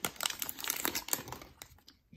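Trading-card pack wrapper and paper insert being handled, crinkling in a run of small crackles and clicks that thin out near the end.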